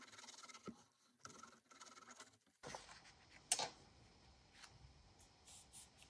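Faint scratching of a glue bottle's nozzle dragged over a chipboard panel as PVA glue is spread, in short strokes. After that comes quieter rustling and light ticks of paper being handled on a cutting mat, with one sharp tap about three and a half seconds in.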